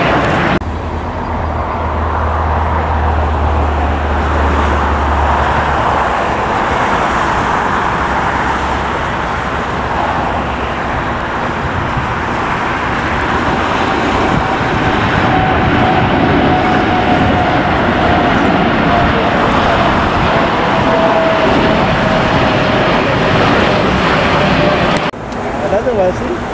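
Steady roar of jet engines from aircraft climbing out after takeoff. In the second half a Boeing 787 is departing, with a faint whine that falls slowly in pitch as it passes.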